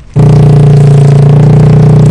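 A motorbike engine running loud and steady at one pitch, cutting in suddenly just after the start.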